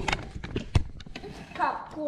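Several irregular knocks and taps, with a voice near the end.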